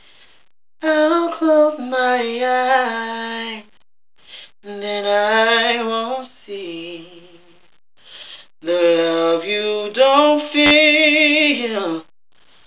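A man singing unaccompanied in a high voice: three long, ornamented phrases with vibrato and sliding runs, separated by short pauses for breath.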